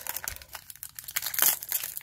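Foil Pokémon booster pack wrapper being torn open and crinkled by hand: irregular crackling, loudest about one and a half seconds in.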